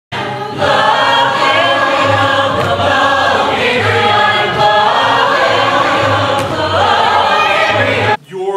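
A large mixed ensemble of male and female voices singing together, loud and continuous.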